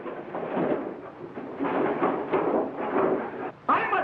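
Scuffle of a fistfight between two men: irregular rough noise of bodies struggling and blows, with a sudden loud hit near the end.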